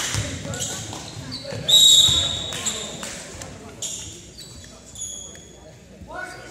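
Basketball game in a school gym: a ball dribbling and voices, then a referee's whistle blown once, long and shrill, about two seconds in. It is the loudest sound and stops play. Shorter high squeaks follow, typical of sneakers on the hardwood floor.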